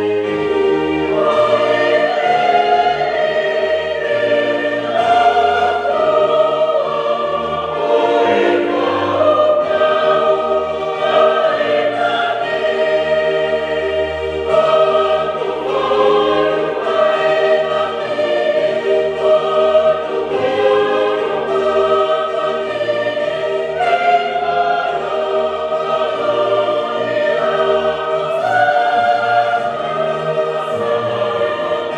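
A choir singing a slow hymn in several parts over sustained low accompaniment notes.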